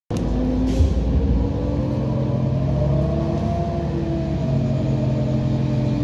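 Heuliez GX127 city bus's diesel engine heard from inside the bus as it moves off slowly, a steady engine note that rises and falls gently with the throttle.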